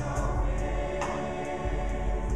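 Mixed-voice show choir singing held chords in harmony with its backing band, a new chord coming in about a second in.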